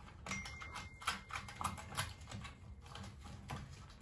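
Irregular clicks and taps of hands handling and fitting the plastic housing of a Honeywell aquastat relay control on a gas boiler, with a faint high tone briefly, under a second in.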